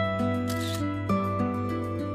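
Background music with held notes, and about half a second in a single smartphone camera shutter click as a photo is taken.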